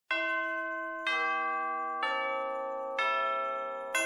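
Four struck bell tones, about one a second, each a step lower than the one before and ringing on into the next: a chime-like musical intro.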